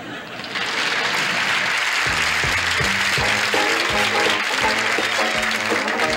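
Studio audience applauding. About two seconds in, a band strikes up an up-tempo dance tune with a steady beat.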